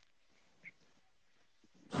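Near silence: quiet room tone, with one faint, brief sound about two-thirds of a second in.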